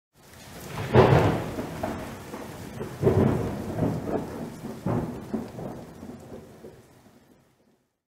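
Intro sound effect with a rumbling, thunder-like sound over a steady rain-like hiss. Three loud deep swells come about two seconds apart, and the sound then fades away shortly before the end.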